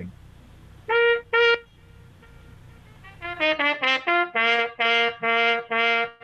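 Trumpet played through a Huber buzz mute fitted with its original regular bass. Two short notes come about a second in, then from about three seconds a quick run of notes settles into a string of detached notes on one lower pitch.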